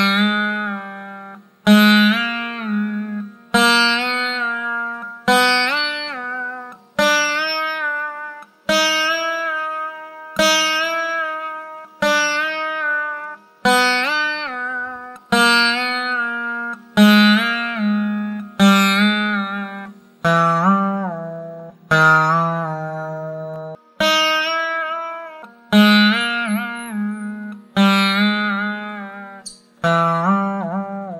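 Saraswati veena played solo in a Carnatic gamaka exercise, a three-note pattern. A string is plucked about every second and three quarters, and each ringing note is pulled on the frets so its pitch bends up and down between notes before it fades.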